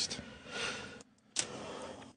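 A man sighing heavily: two long, breathy breaths with a short silence between them.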